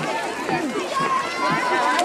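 Crowd of adults and children talking at once, many voices overlapping, as they walk along together. In the second half one higher voice holds a longer note above the chatter.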